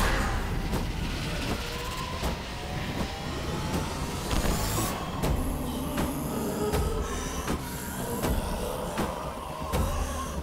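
Horror-film sound design: a heavy low rumbling drone with a sweep rising in pitch over the first five seconds that cuts off sharply, followed by scattered faint knocks.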